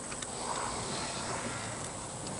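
Quiet outdoor background: a faint steady high hiss of insects, with light rustling as the bee suit's fabric is lifted and handled.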